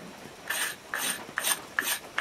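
An old piece of glass scraping shavings off a small wooden stick, about four short scraping strokes roughly two a second, as the wood is worked round.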